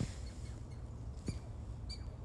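Chipmunk chirping: about three short, high chips spaced under a second apart, over a steady low rumble.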